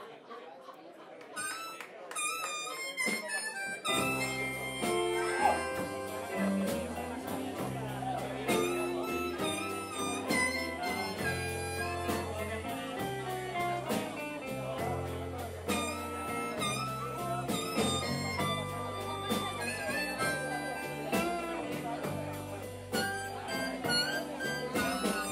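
A blues band starts a song: a few scattered notes, then at about four seconds the full band comes in with electric guitar, electric bass and drums. An amplified harmonica, cupped against the vocal microphone, plays over them.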